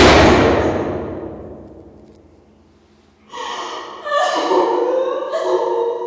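A loud heavy thump with a long echoing tail that dies away over about two seconds. A little past three seconds in, a young woman starts sobbing and gasping in broken bursts.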